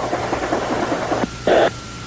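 Hiss and static on a two-way military radio channel between transmissions. A little over a second in, the hiss drops off and leaves a faint steady tone, and a short burst of static follows.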